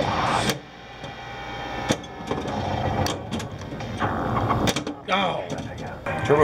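Teenage Mutant Ninja Turtles pinball machine in play: sharp mechanical clicks and knocks from the ball, flippers and targets, over the machine's electronic sound effects.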